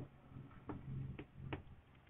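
Faint ticks and taps of a marker pen writing on a whiteboard, three or so short strokes, over a low room hum.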